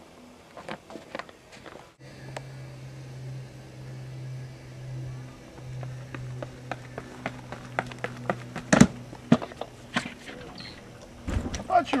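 A pole vaulter's running approach on a rubber track: quick footfalls of spiked shoes that come closer together, then a single loud strike about nine seconds in, where the pole is planted. A steady low hum runs under the run.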